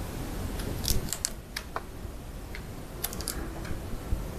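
Metal bonsai pliers working on a hard santigi branch stub: a run of sharp clicks and small snaps, bunched in the first two seconds and again around three seconds in, over a low steady rumble.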